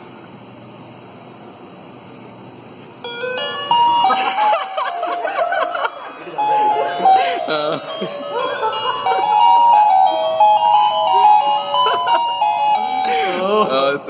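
Wireless doorbell speaker inside an Arduino prank box playing an electronic tune of single stepped notes. It is set off about three seconds in as the box is opened and its light sensor sees light.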